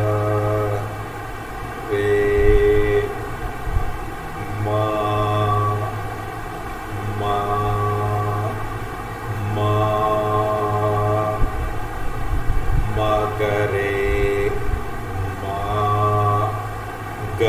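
A man's voice singing Indian sargam notes (sa, re, ga) as separate held tones, about six of them, each a second or so long with short pauses between and the pitch shifting from note to note.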